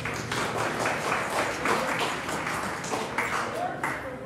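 Scattered applause mixed with indistinct voices from a small congregation in a hall-like room, starting as the guitar music dies away.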